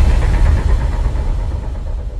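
Deep, low rumble of a cinematic boom sound effect dying away, the tail of a heavy hit, slowly fading.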